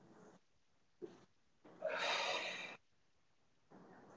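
One audible exhale, a breathy rush of air about a second long starting near two seconds in, as a person rolls on a mat during a Pilates rolling exercise. A faint short tick comes about a second in.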